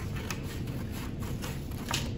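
Scissors cutting through sheets of paper: a series of short snips over a low room hum, one somewhat louder near the end.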